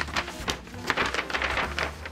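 Large paper instruction sheet rustling and crinkling as it is turned over and unfolded by hand: a quick run of irregular crackles.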